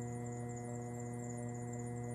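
Electric potter's wheel motor running with a steady hum.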